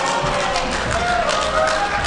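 Audience in a large hall murmuring, with several drawn-out pitched voices over the chatter, some rising in pitch near the end.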